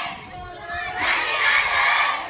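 A large group of schoolchildren shouting a patriotic slogan together. After a short lull, the shout comes in loud about a second in.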